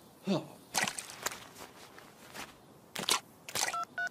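A character's short falling squeak, a few brief scuffing sounds of effort on the muddy ground, then near the end a quick run of short beeping tones as comic sound effects.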